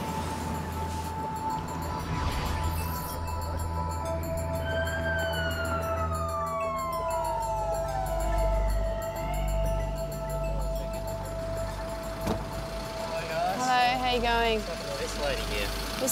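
An ambulance siren falling once in pitch over about four seconds as the ambulance arrives, over low, steady background music. Voices start up near the end.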